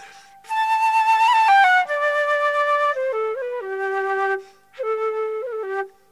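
Solo flute playing a slow air in long held notes, with quick ornamental turns between them. The playing breaks off briefly for breaths at the start, a little past the middle and at the end.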